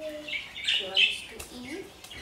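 Pet budgie giving a quick run of short, harsh squawking calls in the first half, the loudest about a second in.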